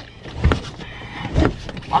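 Large hard-shell suitcase being shoved up into a van's overhead storage, with two heavy bumps about a second apart as it is pushed and knocked into place.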